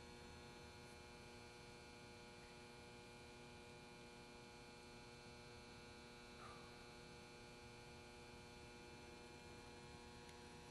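Near silence: a faint, steady hum made of several held tones, with one faint, brief sound about six and a half seconds in.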